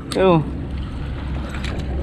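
A short spoken exclamation at the start, then a steady low rumble of wind and sea noise with no other distinct sound.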